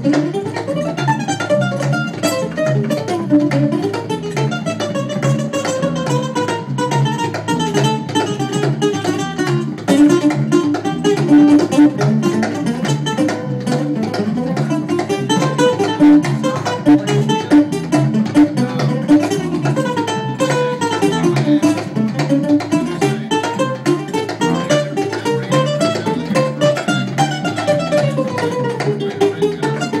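Live instrumental jam of electric and acoustic guitars over a hand drum, with a guitar playing fast melodic lead runs that rise and fall over a steady rhythm.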